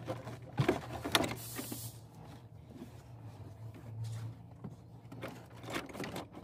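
Hard plastic dashboard parts knocking and clicking as they are handled, with two sharp knocks about a second in, over a steady low hum.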